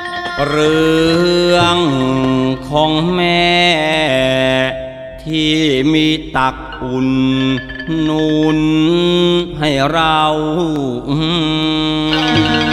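Thai lae singing: a male voice chants the lyrics in long held notes that bend and waver, over musical accompaniment, with short breaks between phrases.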